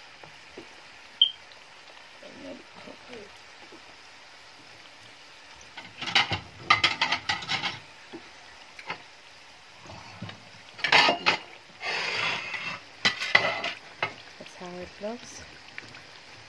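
Sweet-potato pastries deep-frying in a pan of hot oil, with a steady sizzle. About six seconds in, and again from about eleven to fourteen seconds, there are bursts of louder crackling and scraping as a slotted spatula turns them over in the oil.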